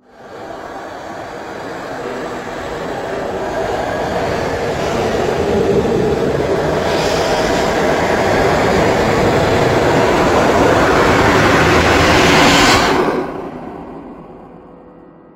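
A loud, dense rushing noise that swells over the first few seconds, holds, and cuts off sharply about a second before the end, leaving a fading tail.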